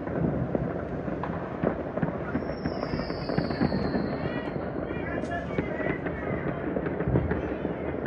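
Many fireworks and firecrackers going off at once across the surrounding city, a dense, unbroken crackle of bangs. A high whistle slowly falls in pitch from about two and a half to five seconds in.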